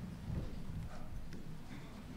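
Faint, scattered low knocks and shuffling in a hall: people settling and handling things between speakers.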